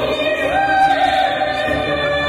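A woman singing a long held note into a microphone over instrumental accompaniment, her voice stepping up in pitch about half a second in.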